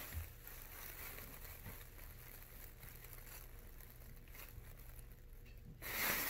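Faint steady hum and tone of a clothes dryer running in another room, the tone stopping shortly before the end. Light rustling of a plastic bag comes in at the end.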